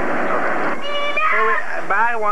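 Overlapping chatter of a room full of people, with a brief high-pitched vocal cry about a second in, followed by more talking.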